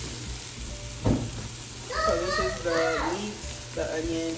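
Chopped leeks frying in oil in a stainless steel pot, a steady sizzle, with a short knock about a second in. Partway through, a child's high voice is heard briefly over the sizzle.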